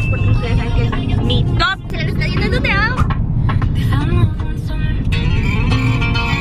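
A woman singing a pop song with swooping, drawn-out notes, over the steady low rumble of a car interior.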